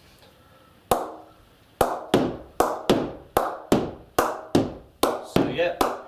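Old leather cricket ball being tapped up on the face of a new willow cricket bat that is not yet knocked in. About a dozen sharp knocks, each with a short ring: the first about a second in, then a steady run at roughly two or three a second.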